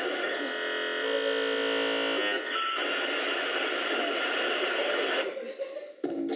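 Theatre audience applauding and cheering, with a held musical chord over the first two seconds or so. The noise dies away near the end as the stage goes dark.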